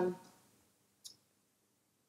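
The tail of a woman's drawn-out "uh" at the start, then quiet broken by one short click about a second in, from the laptop being worked during the demo.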